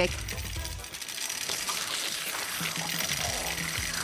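A small kitchen grinder crushing candy with a fast, even rattle, over background music.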